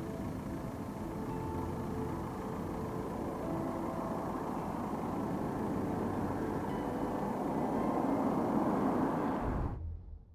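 Cars driving on a test track: steady tyre and road noise that grows gradually louder as they approach, then cuts off abruptly near the end.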